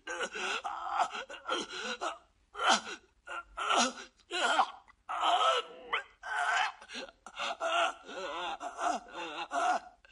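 A person gasping and groaning in distress, in short broken bursts of breath and voice, with a few louder cries.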